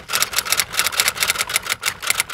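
Rapid, even key clicks like typewriter or keyboard typing, about ten a second.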